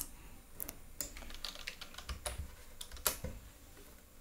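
Computer keyboard keystrokes: a few faint, scattered key clicks, about a second apart, as a number is typed in and entered to run a program.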